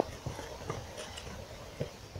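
Footsteps walking across grass: a few soft, spaced thuds.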